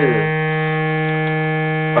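Hand-pumped harmonium holding one steady chord, a low reed drone with several higher notes sounding together.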